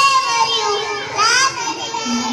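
A young girl's high voice performing into a microphone and carried over a small loudspeaker, in held and gliding phrases.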